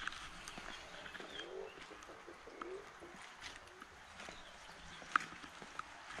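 A pigeon cooing faintly, a few low rising-and-falling calls, over a light steady hiss of rain.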